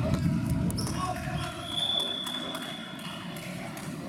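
Futsal game sounds in a reverberant sports hall: players' voices and the thuds of the ball being struck, busiest in the first second and a half, with a thin steady high tone lasting about a second midway.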